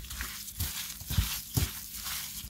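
Gloved hands mixing salted raw carp pieces in a glass bowl: irregular wet squishing and rustling with soft dull thumps.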